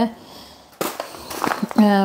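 A paper spice packet crinkling as it is handled and tipped, shaking dried chilies out into a palm, starting about a second in.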